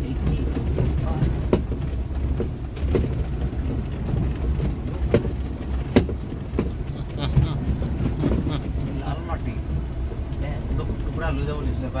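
Inside a Mahindra SUV driving slowly over a rough dirt and gravel track: a steady low engine and road rumble. A few sharp knocks and rattles sound as the vehicle hits bumps, the loudest about six seconds in.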